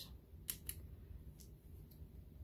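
Faint clicks of a thin clay blade slicing through a polymer clay cane and meeting the work surface, about four short ticks over two seconds.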